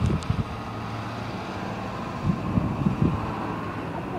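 Road traffic going by, with wind gusting on the microphone in irregular low bursts.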